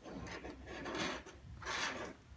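Aluminium glue-remover mold holding a phone screen being slid and shifted on a wooden desk, scraping and rubbing in three short rasping bursts, the last the loudest.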